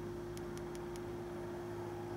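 Four faint, quick clicks of a Zebralight SC52 flashlight's tail push-button switch, all within about half a second, the rapid four-click sequence that calls up its battery-level flashes. A steady low hum runs underneath.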